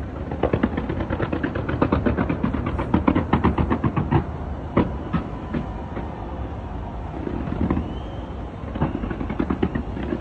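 Fireworks going off in a rapid barrage of bangs and crackles, densest over the first four seconds or so, then thinning out. A short whistle comes about eight seconds in, and another quick flurry follows near the end.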